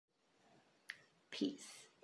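A single sharp click a little under a second in, then a short breathy vocal sound from a woman just before she speaks.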